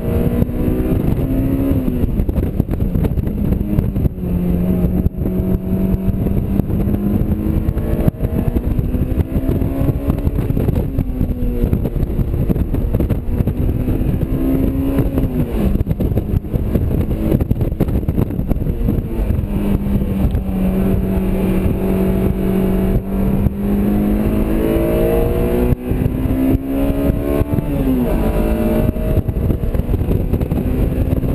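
Honda S2000's four-cylinder VTEC engine heard from inside the cabin at speed on track, its pitch climbing through long pulls and dropping sharply at each lift-off or gear change, about four times, with steady stretches between. Wind and road noise run under it.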